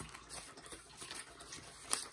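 Paper banknotes being counted by hand: faint, irregular rustles and flicks as bills are flipped over one by one.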